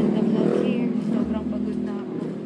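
Steady engine and road hum inside a moving car's cabin, with a voice heard briefly and indistinctly over it.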